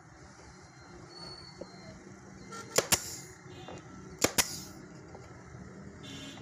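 Pneumatic nail gun firing into plywood: four sharp shots in two quick pairs, one pair about three seconds in and another just past four seconds.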